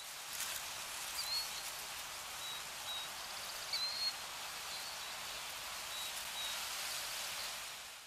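Outdoor nature ambience: a steady hiss with a handful of short, high bird chirps scattered through it, fading out at the very end.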